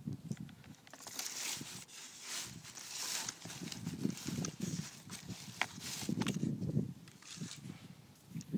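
Rustling and soft knocks from a foam RC model plane being handled and turned over, with its hatch opened to show the receiver.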